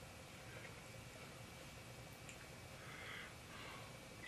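Near silence: room tone, with a faint tick about two seconds in.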